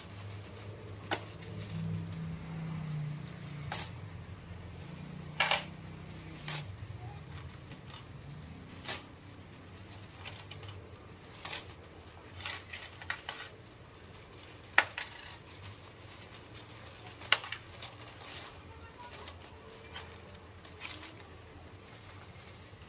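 Metal coins clinking and clicking against each other and the table as they are sorted, stacked and dropped into a plastic bag, in irregular sharp clicks with a few louder ones. A low drone sounds through the first several seconds.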